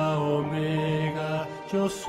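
Slow devotional song, a singer holding long notes.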